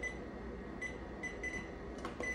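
A few short, high electronic beeps from a digital bench power supply as its rotary adjustment knob is worked, coming in quick succession in the second half.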